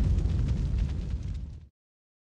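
Low rumbling tail of a boom sound effect in a logo sting, fading and then ending abruptly about one and a half seconds in.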